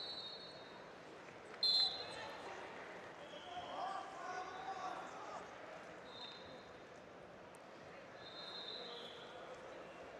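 Faint sports-hall ambience: distant voices and shouts, with several short high-pitched whistle-like tones. The loudest is a sharp burst about two seconds in.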